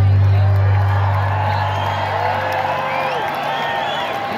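Last low bass note of a live reggae band's song ringing on and fading away over about three seconds, as a large concert crowd cheers and whoops.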